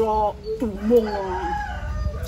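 A rooster crows once: a single long crow starting about half a second in and lasting over a second.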